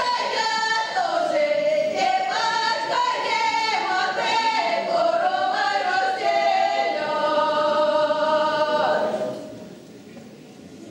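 Ukrainian folk choir singing a cappella, with no instruments. The song ends on a long held note that dies away about nine seconds in.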